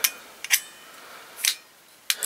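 Steel locking pliers being worked by hand: a sharp metal click at the start, another about half a second in, then a softer rasp about a second and a half in.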